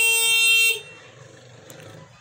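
A horn sounding one steady, unwavering note that cuts off sharply under a second in.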